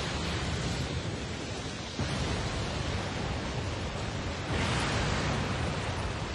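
Steady rushing rumble of a billowing smoke and dust cloud, an anime sound effect, swelling with a louder hiss about four and a half seconds in.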